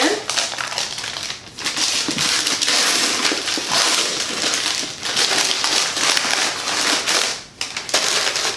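Wrapping around a book being torn open and crumpled by hand: a dense rustling and crinkling that starts about a second and a half in and keeps on for about six seconds.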